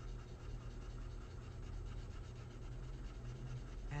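Blue colored pencil shading lightly across paper, a faint steady scratching as the pressure eases off, over a low steady hum.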